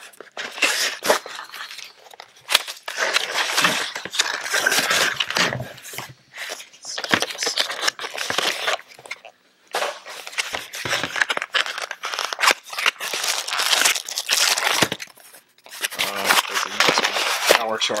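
Cardboard box and plastic bag being handled and opened: irregular bursts of rustling, crinkling and tearing, with a few short pauses.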